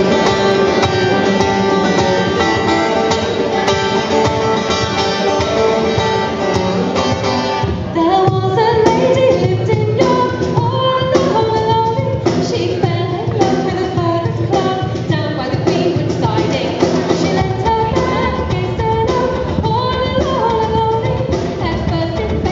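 Live folk-rock band playing: acoustic guitar, fretless bass and cajon. A sung melody joins about eight seconds in.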